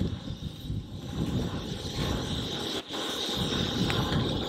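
Wind buffeting the microphone: a low, unsteady rumble that rises and falls.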